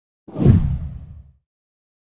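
A whoosh sound effect with a deep low rumble, swelling in about a quarter second in and dying away within about a second: an editing transition sound leading into an animated intro.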